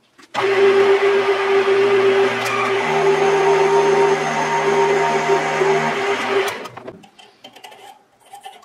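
Metal lathe running while turning down a steel hex shaft, with a steady hum. It starts about a third of a second in, its low hum steps higher about three seconds in and drops back near six seconds, and it winds down near the end.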